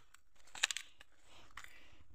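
A few faint crunches, clustered a little over half a second in: footsteps on dry cut maize stalks and weeds.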